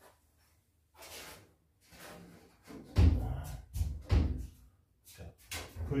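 Steel bulkhead panel of a VW single-cab pickup bed being pushed and knocked into place against the cab: a few softer scrapes, then a cluster of loud dull knocks about three to four seconds in.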